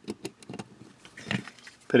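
Light metallic clicks and taps of a Glock 30's recoil spring and guide rod being seated in the slide and the slide being handled: a few sharp clicks in the first half-second, then fainter ones.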